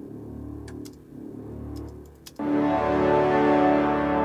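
Playback of a sampled orchestral cue. A low, sustained tuba-like brass note plays quietly at first, with a few faint clicks. About two and a half seconds in, a loud, full sustained chord from the ensemble comes in on top.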